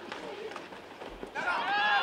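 Faint outdoor field ambience, then a man's voice starts about one and a half seconds in: the live commentary resuming.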